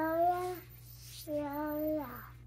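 A young girl singing a lullaby in long held notes: one slightly rising note at the start, then a pause, then a second steady note near the end.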